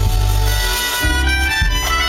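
Live band music: a wind instrument plays a melody line that steps upward over electric bass and drums.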